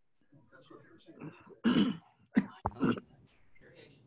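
A person coughing and clearing their throat: three short loud bursts in the second half, over faint murmured talk.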